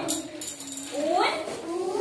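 Speech only: a woman teacher's and young children's voices speaking Hindi, the pitch rising in a sing-song way.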